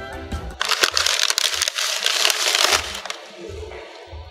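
A foil food wrapper and a paper takeout bag crinkled and rustled by hand for about two seconds: a loud, dense crackling that stops a little before the end. Background music plays underneath.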